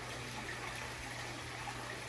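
Steady background noise, an even hiss with a low hum beneath it; no distinct sound stands out.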